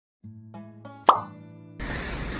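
Logo intro sting: a few soft pitched notes, then one loud cartoon 'plop' pop about a second in. Steady room noise begins just before the end.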